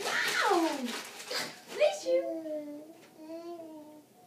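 A baby vocalizing without words: a long falling squeal, a short rising call, then a held, wavering 'aah' for the last two seconds.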